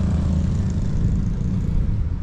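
A steady low rumble, with no clear pitched tone.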